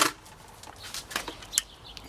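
Faint handling noise: light rustling with a couple of short clicks, about a second in and again a little later.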